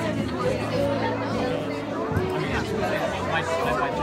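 Guests chatting at the tables over live music with a steady bass line and held notes; the music fades down in the middle and comes back near the end.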